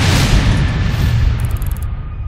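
Logo-intro sound effect: a deep rumbling boom that slowly dies away, with a brief high glittering shimmer near the end.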